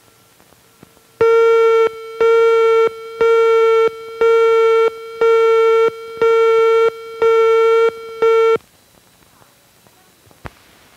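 Countdown beeps on a film leader's soundtrack: eight steady, buzzy tone beeps about a second apart, the last one cut short.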